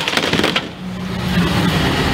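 Haller X2c rear-loading garbage truck working its packer on bulky waste. A brief clatter of boards and debris in the hopper comes first. From about a second in, a steady low hum of the engine and hydraulics grows louder.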